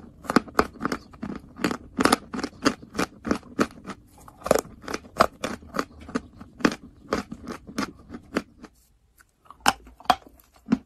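Chalk being chewed close to the microphone: a rapid series of crisp crunches, about two or three a second, broken by a short gap near the end.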